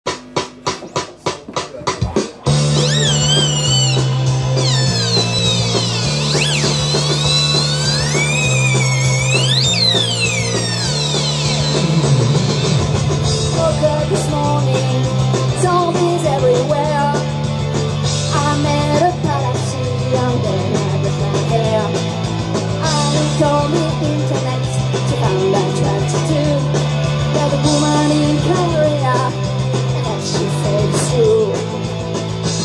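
Live rock band playing the instrumental intro of a song, with an electric guitar and a low bass line that steps between a few notes. It opens with a fast ticking beat for about two seconds; then high notes slide up and down for several seconds before the guitar part settles in.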